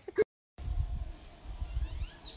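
Low outdoor ambience after a brief cut to silence: wind rumbling on the microphone, with a few faint bird chirps near the end.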